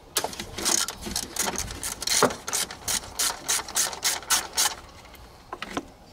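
Small ratchet wrench clicking as it backs out a 10 mm bolt holding the fuel rail bracket, a run of sharp clicks that settles into about four a second and stops near five seconds in.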